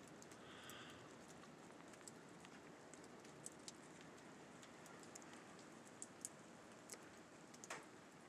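Near silence: a faint steady hiss with a few soft, scattered ticks.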